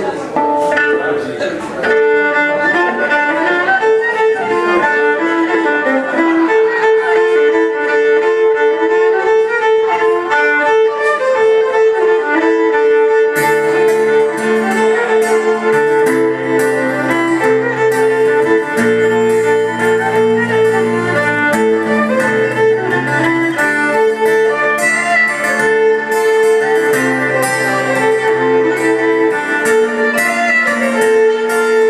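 Fiddle playing a folk melody over a 12-string acoustic guitar strumming chords. The fiddle comes in fully about two seconds in, and the guitar's deeper chords join strongly about halfway through.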